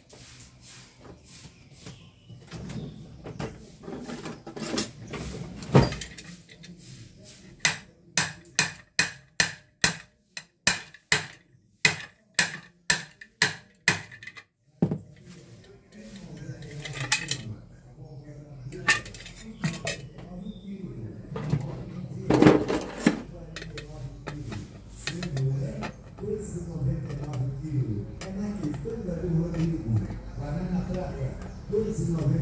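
Hammer tapping out a dent in the rim of an aluminium pressure-cooker lid: a steady run of about fifteen sharp metallic strikes, a little over two a second, then scattered lighter knocks and clinks as the lid is handled.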